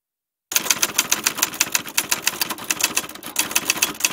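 Typewriter keys clacking in a quick, even run of keystrokes as a line of text is typed out. It starts about half a second in out of dead silence and stops abruptly right at the end.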